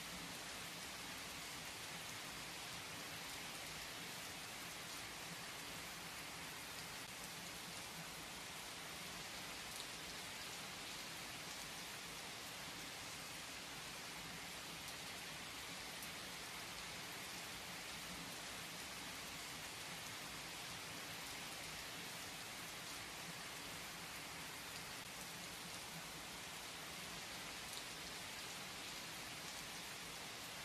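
Steady rain falling, a soft even hiss with a few faint drop ticks and no thunder.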